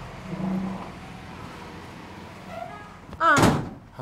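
About three seconds in, a door thuds together with a short, loud exclamation from a voice.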